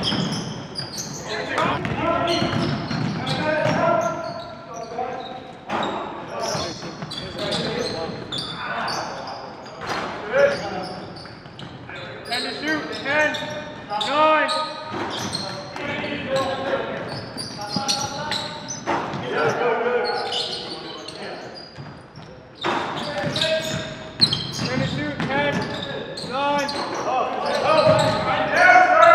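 Live basketball game sound in a gym: a basketball bouncing on the hardwood floor, with players' indistinct voices and calls, echoing in the hall.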